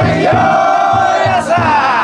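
A festival float's taiko drum beaten in a steady fast rhythm, about four beats a second, under the long chanting shouts of the float bearers and crowd.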